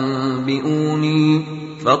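A man's voice reciting the Quran in melodic tajweed chant. He holds one long, steady note at the end of a phrase, with a slight step in pitch partway through. The note fades, and there is a quick breath in just before the next phrase.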